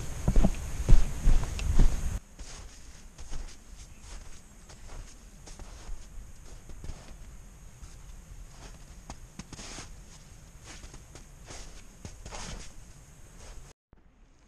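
A hiker's footsteps on a forest trail, an irregular run of soft steps and small knocks. In the first two seconds a loud low rumble on the microphone covers them, then it stops suddenly.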